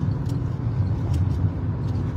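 Steady low rumble of a moving vehicle heard from inside its cabin, with a few faint ticks.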